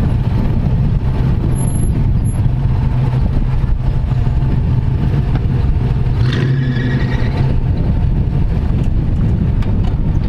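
Willys Jeep station wagon's engine running at low revs in low range as it crawls up a muddy, rutted trail, a steady low drone. About six seconds in, a brief higher-pitched squeal rises over it for about a second.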